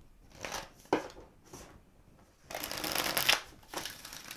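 Tarot deck being handled and shuffled: a few light taps of the cards, then, from about two and a half seconds in, a loud rapid crackling run of cards falling together for about a second as the deck is shuffled.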